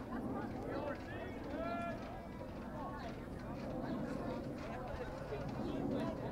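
Indistinct voices of players and spectators talking and calling out across an open playing field, with a few raised calls about a second or two in, over steady background noise.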